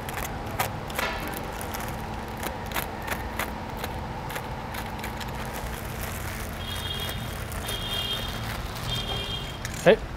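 Plastic wrapping rustling and crackling as a stainless steel exhaust pipe is unwrapped and handled, with scattered light clicks and taps over a steady workshop hum. Three short high-pitched tones sound in the second half.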